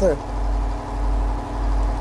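A steady low mechanical hum with a fast, even pulse, heard through a pause in the speech. A spoken word trails off at the very start.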